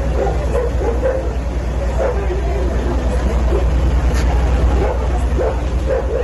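Indistinct voices of several people with a dog barking now and then, over a steady low hum.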